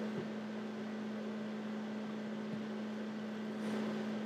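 Steady low hum over a faint even hiss: background room tone.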